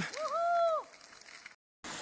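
A person's single high-pitched squeal of under a second while sliding and tipping over on a plastic butt sled on snow. After a short dropout, the steady rush of a mountain stream starts at the very end.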